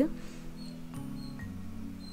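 Soft background music: sustained low notes that change every second or so, with short high notes above them.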